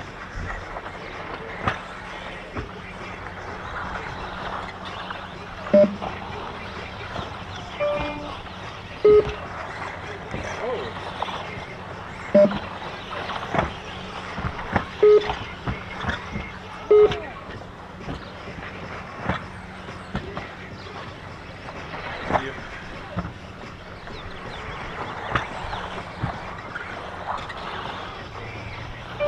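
Electric 1/10 2wd RC buggies running on an astroturf track: a steady wash of motor whine and tyre noise, with faint rising and falling whines. Sharp knocks and short beeps break in every few seconds.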